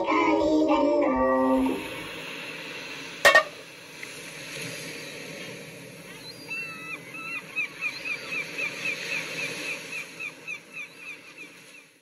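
The last sung notes of a sea shanty, ending about two seconds in on a held low note. A single sharp click follows, then a low hiss with a quick series of faint high chirps in the second half.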